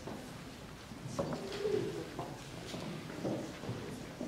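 Faint scattered audience voices in a hall, with a short drawn-out cooing 'ooh' about one and a half seconds in.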